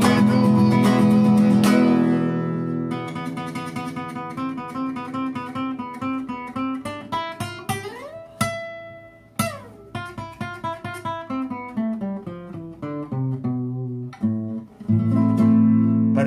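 Acoustic guitar played solo: loud strummed chords at first, then a quieter stretch of fingerpicked arpeggios with a couple of sliding notes, and strummed chords coming back near the end.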